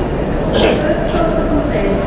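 Busy railway station concourse: many people's chatter over a steady low rumble of the station and its trains.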